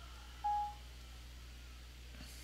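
A single short electronic beep from an iPad, one steady tone about half a second in, as voice dictation of a typed message finishes.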